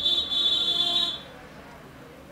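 A single steady, high-pitched electronic beep that cuts off a little over a second in.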